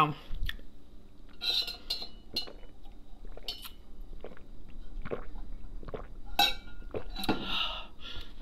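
Light clinks and taps of a metal straw and insulated drinking tumbler as a drink is picked up and sipped, with a few short ringing clinks scattered through.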